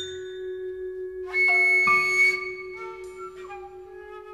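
Modernist chamber music for solo flute and small ensemble. A low note is held throughout while a loud, bright chord of other instruments cuts in a little over a second in, then gives way to softer sustained tones.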